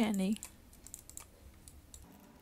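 Faint, scattered clicks of a computer keyboard and mouse, a few per second, following the last syllable of a spoken word at the very start.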